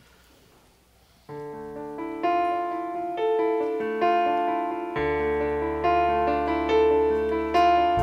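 A worship band's keyboard, with an electric piano sound, begins a song's introduction about a second in, playing sustained chords that change roughly once a second. A deep bass note joins about five seconds in.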